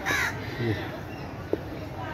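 A crow cawing once, a short harsh call right at the start.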